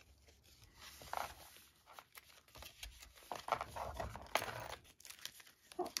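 Paper and card rustling and sliding under the hands as a handmade paper journal's pages are turned and a card is drawn out of a page pocket, with a few small taps; busiest about three to four and a half seconds in.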